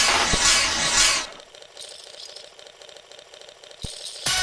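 Algorithmically generated TidalCycles/SuperCollider electronic pattern: a dense, noisy texture over regular clicks that cuts off suddenly about a second in as the pattern is silenced, leaving a faint high crackle. A single low thump comes near the end.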